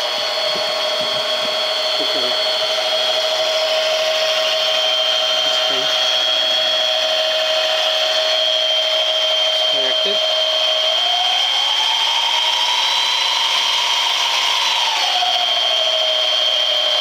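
Mini lathe spindle motor running with a steady whine that rises in pitch about eleven seconds in, holds, then drops back near the end as the spindle speed is turned up and back down.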